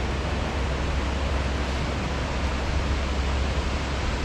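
Shallow river water rushing over stones: a steady, even wash of water noise.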